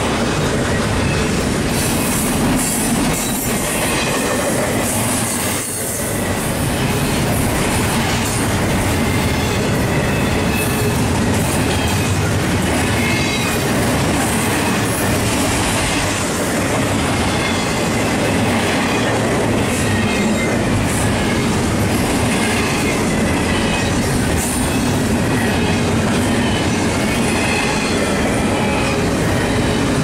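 Double-stack intermodal well cars of a freight train rolling past close by: steel wheels on rail make a steady loud rumble and rattle, with faint high wheel squeal coming and going.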